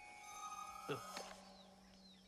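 Faint film soundtrack audio: a few steady held tones, with a lower tone joining about a second in. There is a short "ugh" about a second in.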